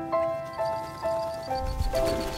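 Solo piano playing a slow, gentle melody of sustained, ringing notes. A faint, rapid, high trill runs over it from about half a second in.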